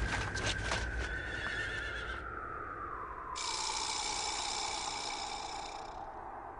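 A long whistled note sliding slowly down in pitch, a soundtrack cue, with a few sharp clicks in the first second and a bright hiss joining about three seconds in.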